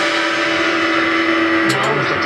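Electric guitar chord and cymbals ringing on after the band's last hit, with one held note cutting off near the end; a voice comes in just after.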